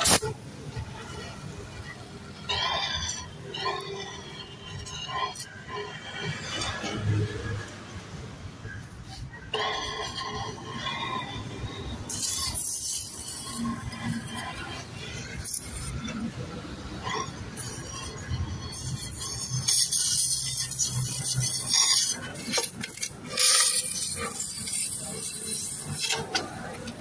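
Welding inside a motorcycle silencer pipe, heard as repeated bursts of high-pitched hissing noise through the second half, with people talking in the first half.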